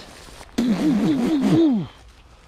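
A man's wordless whoop of excitement, the voice wobbling up and down in pitch about four times a second, then falling away near the end.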